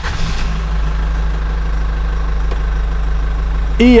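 Car engine idling steadily, low and even, after a short whoosh at the very start.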